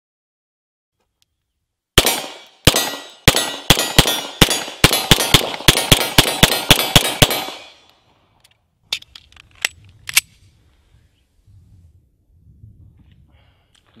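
Beretta M9 9mm pistol firing a fast string of about fifteen shots over about five seconds, the gaps shortening after the first few. The string stops, and a few sharp clicks of the pistol being handled follow. The stop is the sign of the slide-mounted safety having been engaged by accident while racking the slide, shutting the trigger off.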